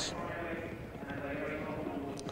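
Hooves of a small field of racehorses galloping on turf, a dense, irregular patter of hoofbeats.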